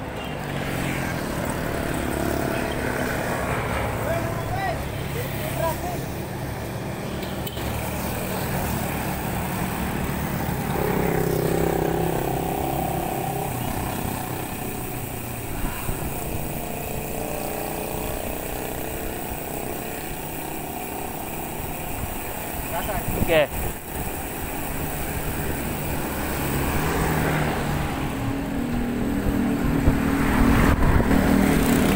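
Road traffic with vehicle engines running, mixed with wind and road rumble from a bicycle being ridden, with one short sharp sound about three quarters of the way through.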